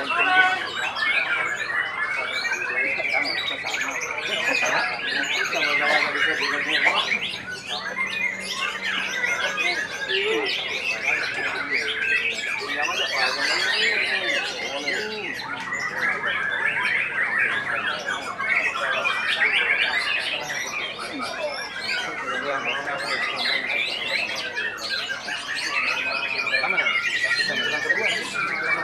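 White-rumped shama (murai batu) singing without a break: a fast, dense run of whistles, trills and chatter, with long sliding whistles near the start and near the end. Other birds sing over it at the same time.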